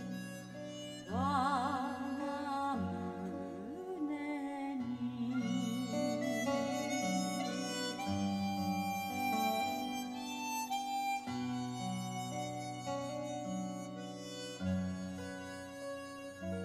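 A recorded song with harmonica played back through a homemade three-way speaker system built on Fostex drivers: a wavering vibrato melody about a second in, then held harmonica chords over a walking bass line.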